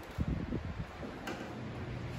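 Scattered dull taps from golf tubes used as drumsticks on chairs, a random wave of strikes passing down a line of players and dying away after about a second.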